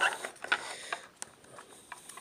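Trading cards handled close to the microphone: a handful of irregular sharp clicks, the loudest at the start, with light rustling of cards between them.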